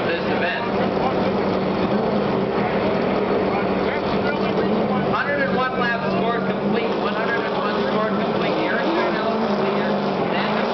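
Steady din of NASCAR race truck engines running at the track, with a public-address announcer's voice in the background around the middle.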